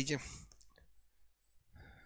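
The end of a spoken word, then a few faint quick clicks of a stylus tapping an interactive whiteboard screen while a pen and colour are picked, and a short soft rustle near the end.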